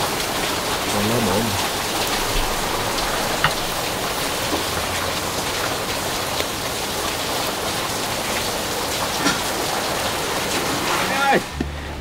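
Steady, even hiss with a few faint scattered crackles, from meat sizzling on a charcoal grill and rain. A man's voice is heard briefly about a second in and again near the end.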